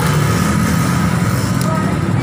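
Street traffic: motorcycle and car engines running past in a steady low rumble.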